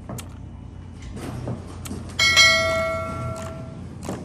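A single bright bell-like ding about two seconds in, ringing out for about a second and a half. Two short clicks come before it.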